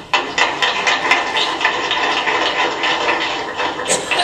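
Audience applauding: many hands clapping at a steady, thick rate.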